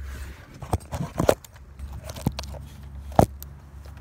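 Handling noise of a phone camera being picked up and repositioned: scattered clicks and knocks, the loudest about three seconds in, over a low steady rumble.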